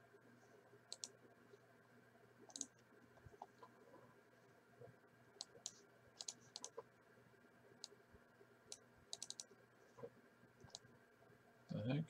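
Faint, irregular clicking from a computer mouse and keyboard being worked, about a dozen scattered clicks with a few in quick succession, over a faint steady hum.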